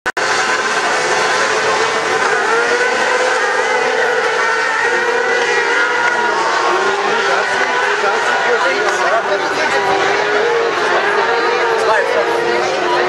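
A pack of 600cc crosscarts with motorcycle engines racing off the start together. Many engines at high revs blend into one loud, steady sound with overlapping, wavering pitches.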